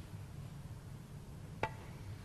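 Quiet low room hum, broken about three-quarters of the way in by one sharp, briefly ringing click: a snooker cue tip striking the cue ball for a soft shot.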